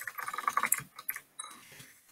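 Computer keyboard typing: a quick run of keystrokes for about a second, then a few scattered taps before it goes quiet.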